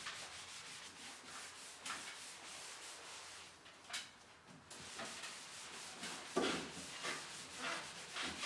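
A sponge wiping vinyl wallpaper as it is washed down with sugar soap and water: soft, irregular rubbing swishes, one with each stroke.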